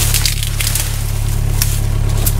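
Bobcat E26 mini excavator's diesel engine idling steadily, with a few sharp clicks and crunches over it.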